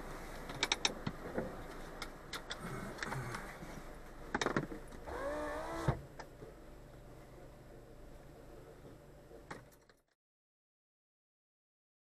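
Street sound picked up by a stationary dashcam: a steady background with scattered clicks and knocks, and a brief squeaky warble about five seconds in. It cuts off to silence about ten seconds in.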